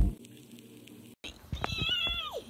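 A woman's high-pitched excited squeal, held on one high note, begins about three quarters of the way in. It follows a brief quiet stretch after the intro music cuts off.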